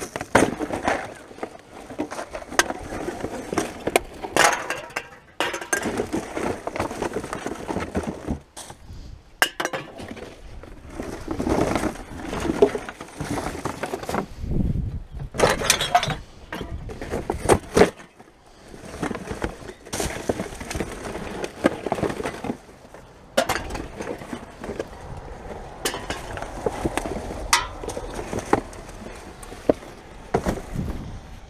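Rummaging through rubbish: plastic bags and cardboard boxes rustling and crinkling as they are pulled about, with drink cans and bottles clinking and knocking in irregular bursts.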